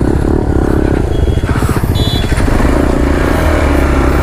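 Motorcycle engine heard from the rider's seat as the bike pulls away from a stop, revving and then running steadily as it gets under way.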